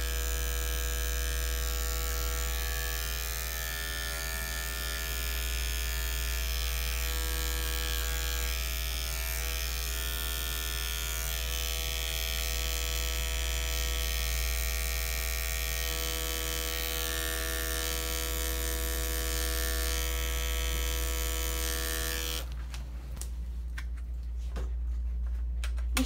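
Electric dog clipper fitted with a #40 blade buzzing steadily as it trims hair from a dog's paw pads. About three and a half seconds before the end the buzz thins out and drops in level.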